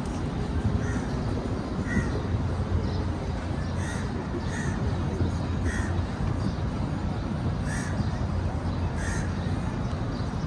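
Birds calling outdoors: short calls repeating roughly once a second with uneven gaps, over a steady low rumble.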